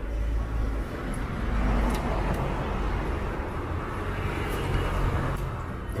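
Road traffic going past: a steady rumble of engines and tyres that swells about a second and a half in and stays up.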